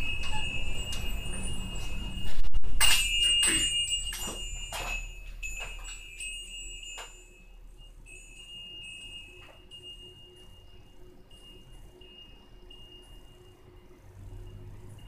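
A hanging metal door chime jangles loudly with a cluster of strikes about two and a half seconds in. The ringing fades away over the next few seconds, and faint tinkles go on after it.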